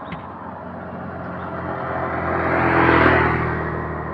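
A motorcycle passing close by, its engine and tyre noise growing louder to a peak about three seconds in and then fading, over the steady hum of other traffic on the road.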